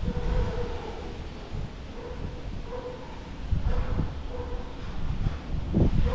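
Low wind rumble on the microphone with a few dull thumps, under a faint steady hum that fades in and out.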